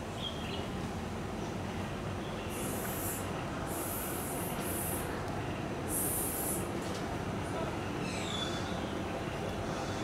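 Steady low background rumble, broken by four short, high hissing bursts in the middle, each under a second long.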